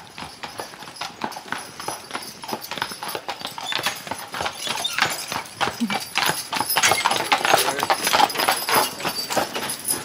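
Hooves of a two-horse team clip-clopping on a dirt road as a horse-drawn wagon approaches, growing louder and loudest about seven to nine seconds in as it passes close by.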